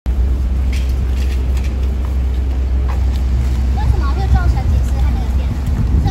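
Outdoor street ambience: a steady low rumble with faint voices in the middle and a few sharp clicks.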